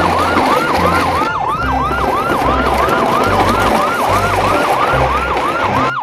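Electronic siren, yelp-style, sweeping up and down about three times a second, over a low pulsing bass beat.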